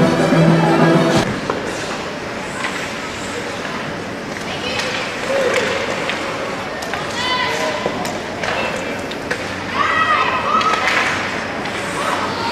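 Background music cuts off about a second in, giving way to the live sound of an ice hockey game in an indoor rink: high-pitched shouts and calls from the players and the hall, with skates and sticks on the ice and occasional thuds.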